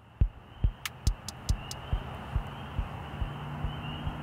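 Electronic kick drum thumping about four times a second and growing fainter, while a steady hiss and a low hum rise beneath it.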